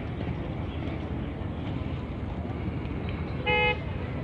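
One short horn toot on a single steady note, about three and a half seconds in, over a steady low outdoor rumble.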